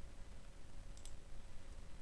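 A single faint computer mouse click about a second in, over a low, even background hiss.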